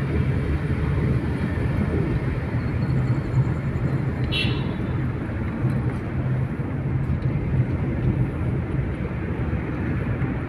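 Road and engine noise heard inside a moving car's cabin: a steady low rumble, with one brief high-pitched chirp about four and a half seconds in.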